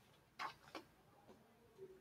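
Near silence with a few faint, irregular clicks, three or four in the span.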